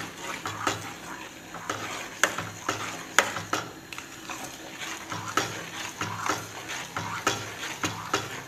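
Long metal spoon stirring rice and milk for kheer in a stainless-steel pot, knocking and scraping against the pot about twice a second.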